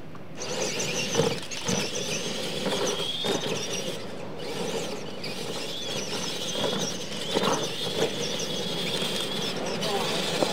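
Electric motors and gearboxes of R/C monster trucks whining at full throttle as they race off the start, the high whine wavering up and down in pitch with the throttle.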